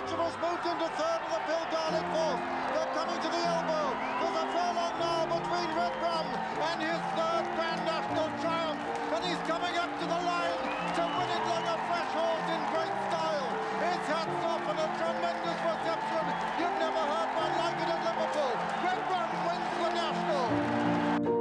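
A large racecourse crowd cheering and shouting, many voices at once, under background music with held notes that change about once a second.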